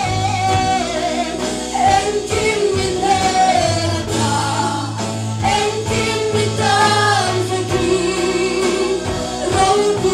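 Two women singing a gospel song as a duet into microphones over amplified instrumental backing, with held low bass notes and drum hits.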